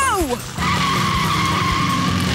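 A short laugh, then about half a second in a racing-car sound effect: a long, steady tyre screech over upbeat background music.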